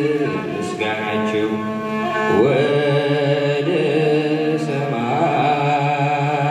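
A man's voice singing in a slow, chant-like style through a microphone, sliding between notes, over steady sustained instrumental accompaniment.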